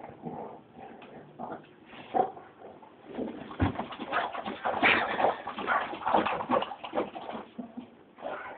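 A Bullmastiff snuffling and scuffling around a battery-operated squirrel toy. Scattered short sounds give way about halfway in to a dense run of quick clicks and knocks.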